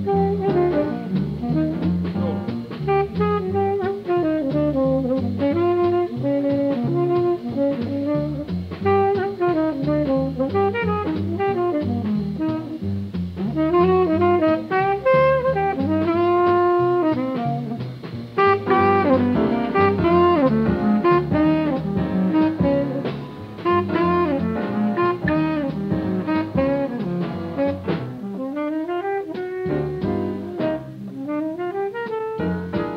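Live 1950s small-group jazz: a tenor saxophone playing fast melodic lines over piano, double bass and drums. Near the end the low end thins out and the saxophone line stands more alone.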